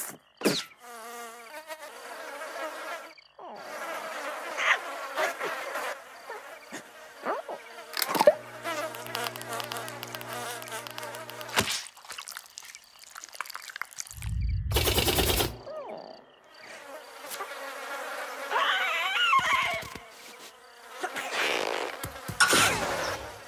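A run of cartoon sound effects and wordless creature noises, with a steady buzz in the middle and a loud burst of noise about fourteen seconds in.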